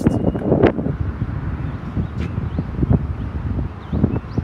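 Wind buffeting the microphone outdoors: a low, uneven rumble, with a few light knocks along the way.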